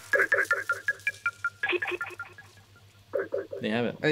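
Playback of a half-time beat made from found-sound samples, in a stripped-back passage without the bass: rapid stuttering chopped vocal snippets and short high electronic phone beeps over a faint low hum. The chops stop for a moment near the end, then return briefly.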